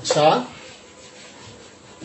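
A felt duster rubbed across a whiteboard, wiping off marker writing. A brief, loud pitched sound comes right at the start.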